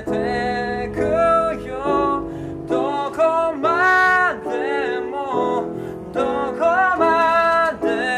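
A man singing a slow Japanese pop melody to his own upright piano accompaniment, in several phrases with one long held note about halfway through.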